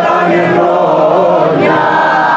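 A man singing a Greek folk song over strummed acoustic guitar, with many voices heard singing together.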